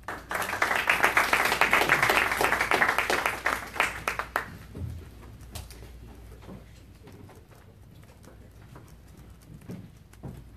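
Audience clapping for about four and a half seconds, then dying away to low room noise with a few small knocks.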